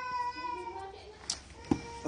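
A cat meowing: one long, slightly falling call that fades out in the first second. Then two light clicks as the plastic blister pack of the wrench is handled.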